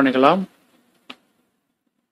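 A man's narrating voice finishing a drawn-out word that falls in pitch in the first half-second, a short faint click about a second in, then silence.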